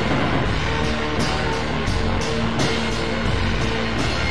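Blues band music: drums keep a steady beat under held electric guitar notes.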